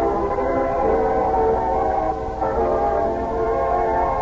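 Orchestral opening theme music: loud, sustained chords from many instruments held together, moving to a new chord about two and a half seconds in.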